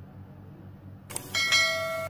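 Subscribe-button sound effect: a click about a second in, then a bell-like chime ringing for under a second that cuts off suddenly. Beneath it runs a low steady hum.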